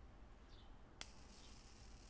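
A sharp click about a second in, then the faint high-pitched electric buzz of a USB-rechargeable plasma arc lighter's arc, lasting about a second.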